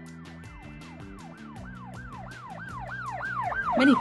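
Emergency vehicle siren sweeping rapidly up and down in pitch, about three to four cycles a second, growing louder toward the end as it approaches. Soft background music with a ticking beat runs underneath.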